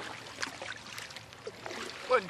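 Canoe and kayak paddles dipping and pulling through the water, with small splashes and drips off the blades.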